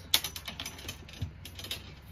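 Irregular clicking and light rattling from handling a leather handbag and its contents as wired earphones are stuffed inside, with one sharper click just after the start.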